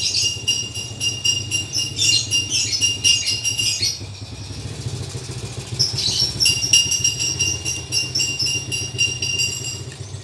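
A high, rapid chirping trill from small animals in two stretches, with a pause of about two seconds in the middle, over a steady low engine-like hum.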